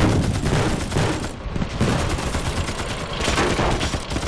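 Dense battlefield gunfire: rapid rifle and machine-gun shots overlapping without a break.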